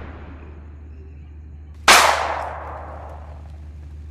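A single loud firework bang about two seconds in, echoing away over about a second. The fading tail of an earlier bang runs into the start.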